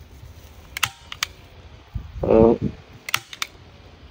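Sharp clicks of a hand stapler pinning a wrapping onto a wooden log: two clicks about a second in, then a quick cluster of clicks about three seconds in.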